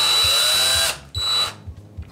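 Cordless drill spinning its bit into a bar of soap, which it bores through quickly. It runs for about the first second with its whine rising in pitch, stops, then gives a brief second burst.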